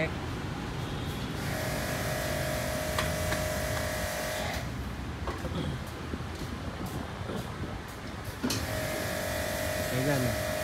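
A small motor whines steadily at one pitch, twice: for about three seconds starting a second and a half in, and again starting near the end.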